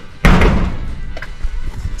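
A sudden loud thump about a quarter of a second in, fading away over about a second, with background music.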